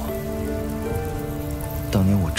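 Background score holding several low sustained notes over a steady hissing, rain-like noise, the sound effect of a ghostly blue flame burning.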